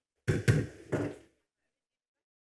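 A short cluster of knocks and thumps, about a second long, with the sharpest knock about half a second in and a second thump near a second in.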